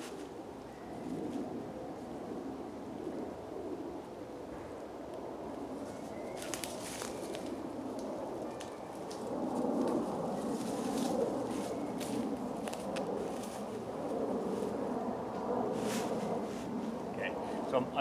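Footsteps on dry leaf litter and the rustle of a tarp and its pegs being handled while its corners are staked out, with a few sharp clicks.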